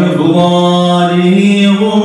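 Unaccompanied male chanting of an Arabic religious poem (qasida), drawn out on one long held note that steps up slightly near the end.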